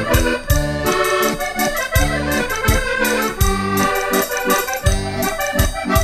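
Portuguese concertina (diatonic button accordion) playing an instrumental break of a popular-music song over a backing with a steady beat.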